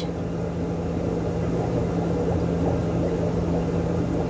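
Steady mechanical hum of fish-room equipment: a low, even drone with a steady low tone and no rhythm or change.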